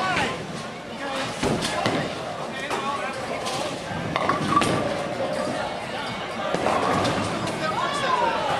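Bowling alley: a bowling ball thuds onto the lane and rolls away, then crashes into the pins about four seconds in. A steady chatter of many voices runs underneath.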